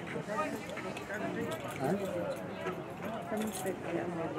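Indistinct chatter of several spectators talking at once, no words clear.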